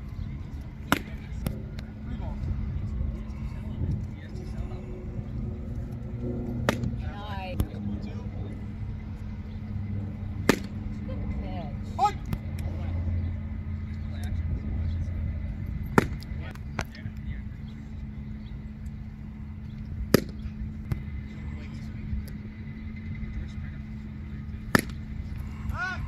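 Baseball popping sharply into a leather glove, again and again every few seconds, as pitches smack into the catcher's mitt and throws are caught. Under it runs a steady low hum with faint distant voices.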